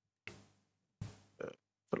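A few faint, short vocal sounds from a person at a microphone, breaths or murmured syllables, separated by silence, the last running into the start of speech near the end.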